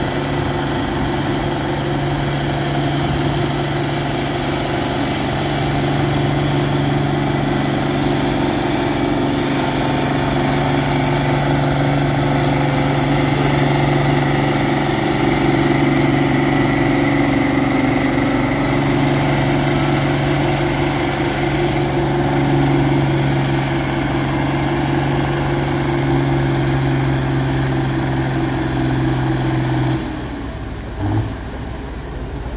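Turbocharged International Farmall 560 tractor engine working hard under full load, pulling a weight-transfer sled at a steady high pitch. The engine note drops away suddenly right at the end as the pull stops.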